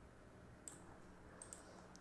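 Three faint computer mouse clicks, spaced roughly half a second apart, over near-silent room tone with a low steady hum.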